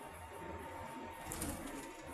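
Steady road and engine rumble inside a moving car's cabin, with a faint steady high whine and a short crackle about one and a half seconds in.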